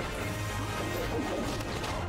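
Film soundtrack playing: background score with a dragon's calls over it.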